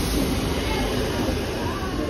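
Class 318 electric multiple unit moving slowly along a station platform, giving a steady low rumble of wheels and running gear.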